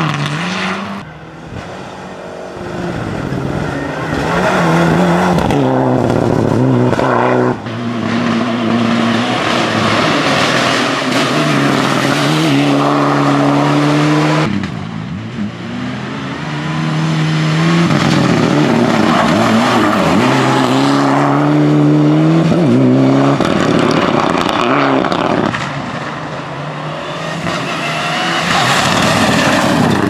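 Mitsubishi Lancer Evolution rally car's turbocharged four-cylinder engine revving hard, its pitch climbing and dropping with each gear change and lift as it drives past. The sound jumps abruptly a few times between passes.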